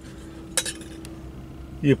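Small stainless-steel camp percolator being handled, giving a light metallic clink or two about half a second in, over a steady faint hum.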